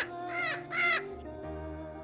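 Three short bird calls in quick succession, about half a second apart, in the first second, over background music with sustained notes.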